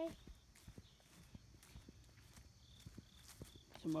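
Quiet, irregular footsteps of a person walking across grass scattered with dry fallen leaves.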